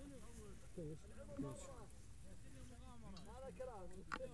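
Soft talking voices over a low, steady background rumble.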